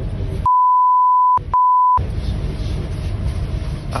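Two censor bleeps, a single high steady tone, the first about a second long and the second about half a second, blanking out two names spoken in the recording. Around them, the muffled voice and low rumble of a train carriage.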